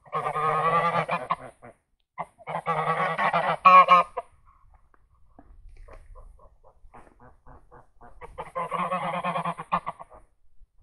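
Domestic geese (domestic greylag, Anser anser domesticus) honking in three bouts of rough, rapidly pulsing calls: one at the start, one about two and a half to four seconds in, and one near the end.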